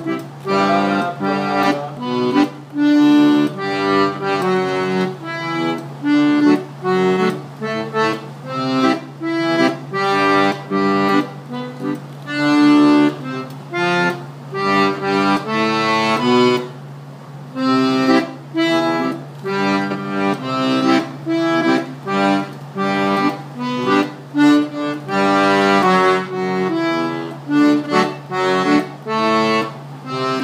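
Universal button accordion playing the baixaria, a single-note melodic run of quick stepping notes in phrases, with a brief pause about 17 seconds in.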